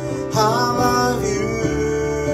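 Live keyboard holding slow, sustained worship chords, moving to a new chord near the end. A wavering voice rises over it briefly about half a second in.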